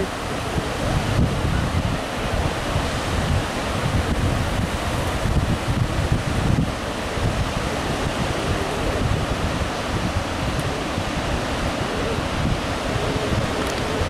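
Wind buffeting the microphone in uneven gusts over the steady wash of sea surf breaking on a sandy beach.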